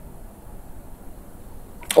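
Faint steady hiss with a low rumble beneath it, a quiet background with no clear event; a man's voice starts right at the end.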